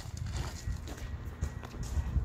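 Footsteps on a concrete sidewalk, a short series of light irregular steps, over a low rumble from the handheld microphone.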